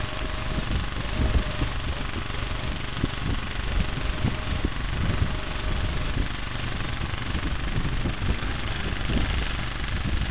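Wind buffeting the microphone outdoors: a steady, rough rumble with irregular low gusts.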